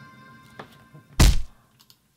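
Trailer music fading out, then about a second in a single loud, deep impact hit, the kind of boom that closes a film trailer, dying away quickly.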